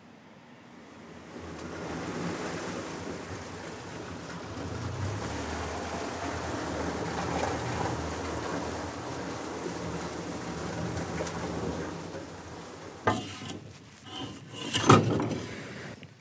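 Small oyster boat under way: its engine running with a low steady hum under the rush of water and wind. Near the end, a few loud sudden knocks.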